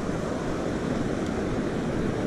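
Steady wash of breaking ocean surf mixed with wind on the microphone.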